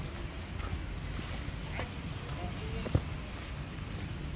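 Faint distant voices of people talking over a steady low outdoor rumble, with one sharp knock about three seconds in.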